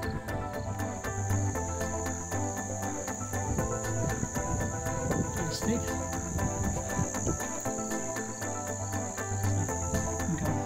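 A steady, high-pitched insect drone over soft background music.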